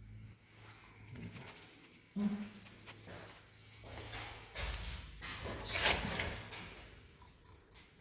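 An interior door being opened: its lever-handle latch is released and the door is pushed open, with noisy rustling loudest about six seconds in.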